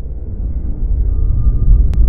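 Deep low rumble of an animated intro's sound design, starting abruptly and swelling steadily louder, with one short click near the end.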